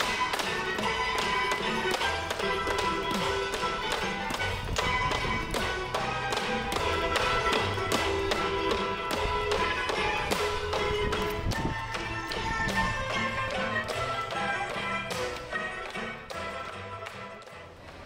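Bamboo tinikling poles tapped on a tiled floor and clapped together in a steady, even beat, with recorded music playing alongside.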